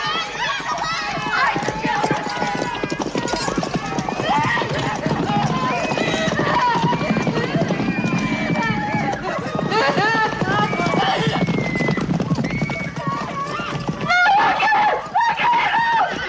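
Horse hooves clattering on a hard dirt lane as a rider gallops through, under continual screaming and wailing of women and children.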